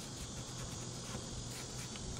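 Faint, steady outdoor ambience with insects chirping, along with a low steady hum.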